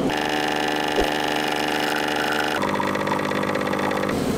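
Espresso machine's pump humming steadily while it pulls a shot of espresso, the hum changing abruptly in tone about two-thirds of the way through.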